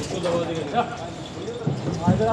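Men's voices calling in the background, with a dull thump or two.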